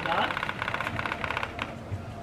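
Kick scooter's wheels rolling fast over a tiled patio, clacking over the tile joints in a rapid, even clicking that thins out near the end.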